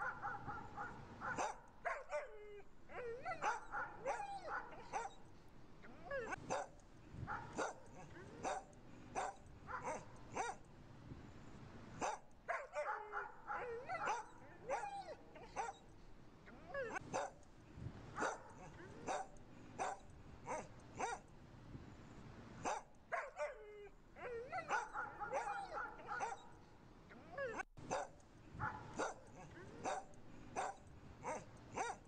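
Dogs barking in rapid, repeated short barks, with recurring stretches of higher, wavering yelps and whines mixed in.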